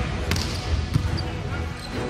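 A volleyball struck with a sharp slap on the serve, about a second in, after a lighter knock just before it, over steady indoor arena noise.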